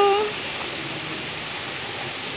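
Steady rush of a small rocky stream flowing over boulders, an even hiss of running water.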